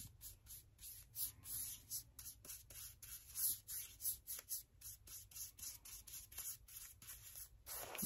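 A flat bristle paintbrush swishing across bare sanded wood in quick, repeated strokes, brushing on a base coat of paint. Faint and scratchy.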